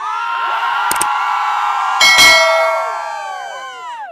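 Intro sound effect: a dense cluster of ringing, bell-like tones that starts abruptly, with sharp hits about one and two seconds in, the second the loudest. The tones then slide down in pitch and fade out near the end.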